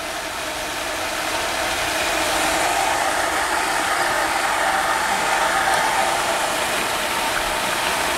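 Water rushing steadily out through a wet-pipe sprinkler system's open main drain during a main drain test, a steady hiss that builds a little over the first couple of seconds. The water is flowing so that the drop in supply pressure can be read on the riser gauges.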